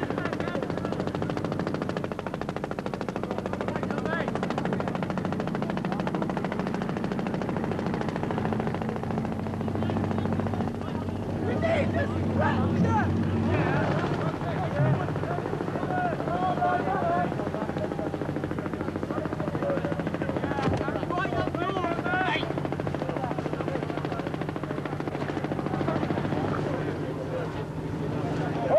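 A steady low engine drone, with men shouting now and then, about twelve seconds in and again later.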